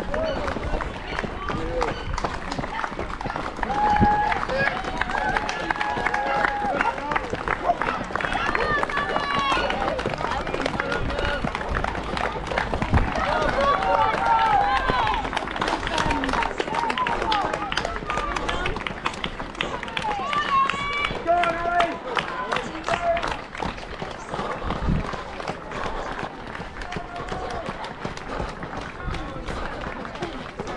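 Running footsteps on a tarmac road, with spectators' voices calling out and cheering at intervals.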